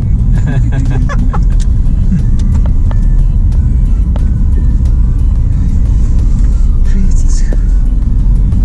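Steady low rumble of a moving car's engine and road noise heard from inside the cabin, with faint voices and scattered light clicks above it.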